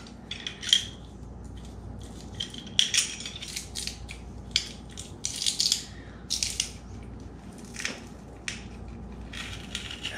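Garlic being crushed in a hand-held garlic press over a bowl: a string of short, irregular crackling and clicking sounds.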